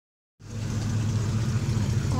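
Pontiac GTO's V8 engine running with a steady low rumble as the car drives slowly past.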